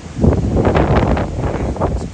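Strong gust of wind buffeting the microphone, rising suddenly about a quarter second in and staying loud.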